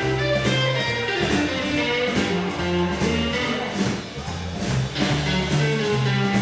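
Live electric blues band playing an instrumental passage: electric guitars, bass guitar and drum kit, with a stepping bass line underneath.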